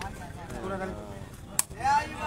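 A sepak takraw ball kicked once, a single sharp crack about one and a half seconds in, over faint crowd voices. A shout starts just at the end.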